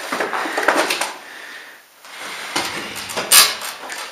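Scuffs, knocks and clatter of a person climbing in through a window opening over wood and rubble, with a sharp clatter, the loudest sound, about three and a half seconds in.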